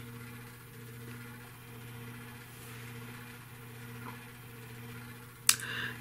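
Quiet room tone with a steady low hum, and a single sharp click about half a second before the end.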